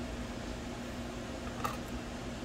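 Steady hum of running computer fans with one held tone through it. A single light click comes near the end as a screwdriver works a small screw on the graphics card.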